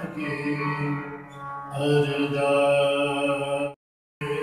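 Sikh kirtan: a man singing a hymn over sustained harmonium and keyboard notes, with tabla. The sound cuts off suddenly shortly before the end.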